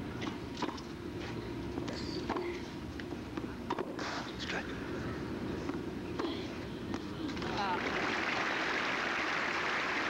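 Tennis ball struck back and forth by rackets in a rally, sharp knocks about a second or so apart. About seven and a half seconds in, the crowd starts applauding the end of the point, and the applause continues steadily.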